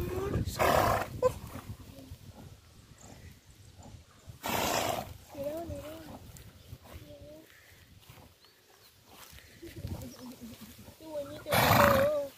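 A horse blowing hard through its nostrils close to the microphone, three short snorts: one near the start, one about four and a half seconds in, and one at the very end.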